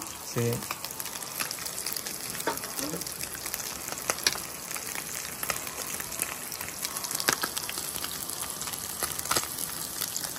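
Small whole fish (chimbolas) frying in oil in a nonstick pan: a steady sizzle with a few sharp pops and crackles spread through it.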